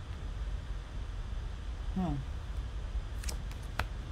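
Two sharp clicks of a tarot card being turned over and laid down, about half a second apart near the end, after a brief spoken 'hmm'.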